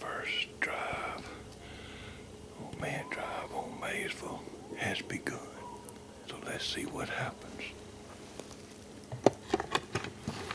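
A man whispering close to the microphone. A few sharp clicks near the end.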